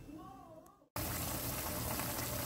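Near silence for about a second, then a sudden cut to the steady bubbling hiss of seasoned ground beef simmering in its juices in a pot.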